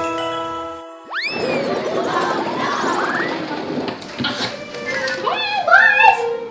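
Edited cartoon-style sound effects: a held, chime-like chord stops about a second in, followed by a quick rising swoop and a rattling, rising whoosh. A voice comes in near the end.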